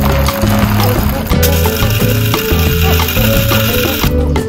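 Background music, with an electric blade coffee grinder whirring under it from about a second and a half in, grinding whole coffee beans to fine grounds, cutting off near the end.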